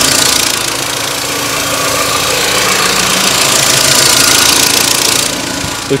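2006 Mini Cooper's 1.6-litre petrol four-cylinder engine idling steadily, heard with the bonnet open. It runs normally, with no big abnormal noise.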